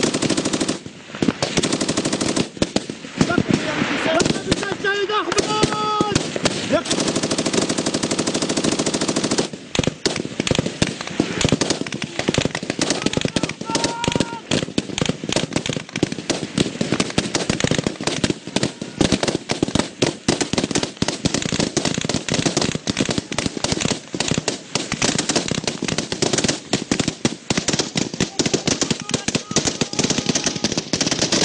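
Sustained automatic fire from a belt-fed machine gun: long runs of rapid shots with only brief breaks, one about a second in and one near ten seconds. Voices are heard briefly over the firing about four to six seconds in and again near fourteen seconds.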